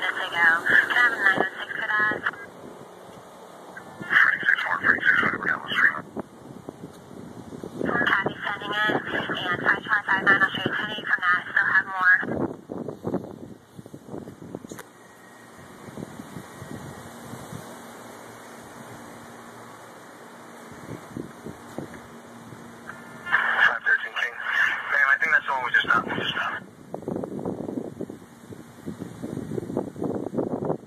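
Emergency dispatch radio traffic from a scanner: several bursts of narrow, tinny voice transmissions. The bursts come in the first few seconds and again near the end, with a long stretch of steady background noise between them.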